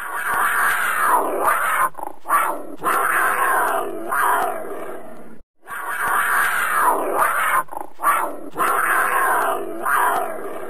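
A big cat snarling and growling in repeated rough snarls. It breaks off for a moment about five and a half seconds in and the same snarling starts over.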